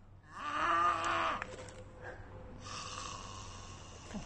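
A woman's voice giving a long, drawn-out moaning groan of about a second, a mock zombie moan; then a quieter, breathy rasp.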